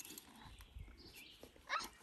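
Faint mouth and muzzle sounds of a horse taking a treat from a hand, with a brief louder sound near the end.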